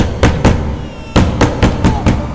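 Loud knocking on a wooden front door: three quick knocks, a short pause, then four more, each with a deep thud. Tense film score music plays underneath.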